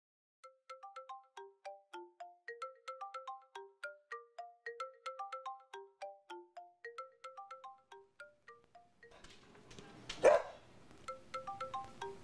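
Chimes ringing: single struck tones at scattered pitches, a few a second, each dying away quickly, in no set tune. About nine seconds in a faint background hiss comes in, and just after it there is one short, loud knock.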